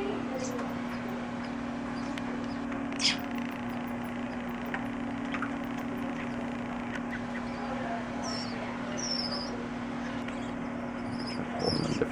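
A few short, high squeaks from a baby big brown bat being syringe-fed: one sharp squeak about three seconds in and several brief chirps later on. A steady low hum runs underneath.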